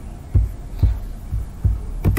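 Four dull, low thumps, unevenly spaced, over a faint steady low hum.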